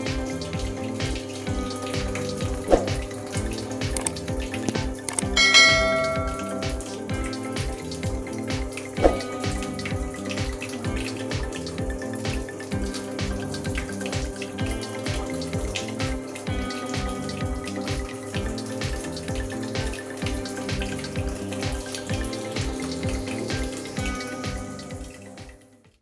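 Water running into an Electrolux EWT705WN top-loading washing machine as its tub fills during a test cycle after the E3 error repair. It is heard under background music with a regular beat and a bell-like chime about five seconds in, and everything fades out near the end.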